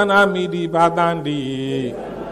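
A single male voice chanting in a Buddhist monk's recitation style. It rises into a held note, moves through a few drawn-out syllables, and slides lower in pitch on a long final note.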